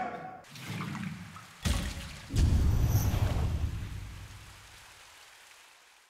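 A splash into water about one and a half seconds in, followed by a louder low rushing swirl that fades away over the next few seconds.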